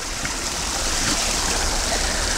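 Stream water pouring over and through a micro-hydro intake's 3D-printed Coanda screen, a steady rushing splash.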